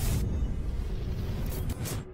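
Logo sting sound effects: a sudden hit at the start over a low rumble, with whooshes near the end.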